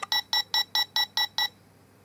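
Electronic sound unit in the menu panel of an Anpanman ice cream shop toy, set off by a button press: a quick run of about eight identical short beeps, about five a second, lasting a second and a half.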